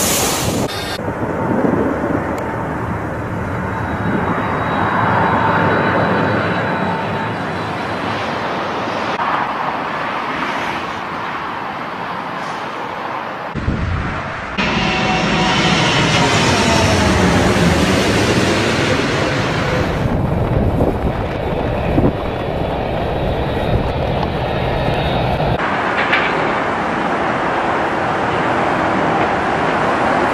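Jet airliners flying low overhead and landing, their engines a loud, steady jet rush, with the sound changing abruptly at several cuts between clips. About halfway through, one jet passes directly overhead and its sound sweeps in pitch as it goes by.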